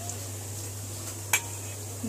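A metal ladle clinks once against a steel pot about a second and a half in, with a brief ring after it, over a steady low hum.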